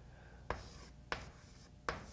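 Chalk writing on a blackboard: three sharp taps of the chalk against the board, about half a second, a second and nearly two seconds in, with light scratching between them.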